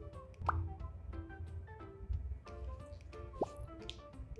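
Light, playful background music of short plinking notes, with two quick rising 'bloop' glides, about half a second in and near the end.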